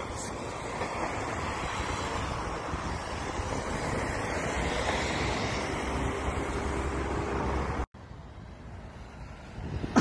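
Wind buffeting a phone's microphone outdoors: a steady rushing noise. About two seconds before the end it cuts off abruptly and comes back as a quieter hiss.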